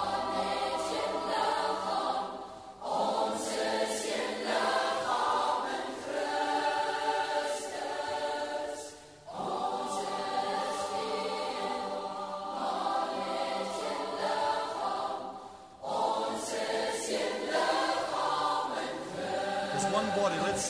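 A choir singing a worship song in long held phrases, with short breaks between phrases about two and a half, nine and sixteen seconds in.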